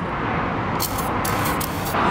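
Aerosol can of paint stripper spraying onto a van's painted body panel in several short hissing bursts, starting a little under a second in, over a steady background hum.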